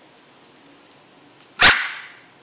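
A dog's single short, loud bark about one and a half seconds in, with a brief fading echo after it.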